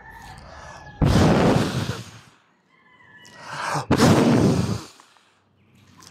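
A man blowing hard into the microphone twice, as a demonstration of a killing breath. The first rush of breath starts suddenly about a second in. The second builds up and bursts out about four seconds in. Each fades away over about a second.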